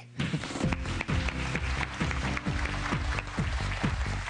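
A studio audience applauding under a music cue with a steady beat.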